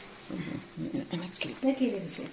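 Indistinct women's voices talking, in short broken phrases.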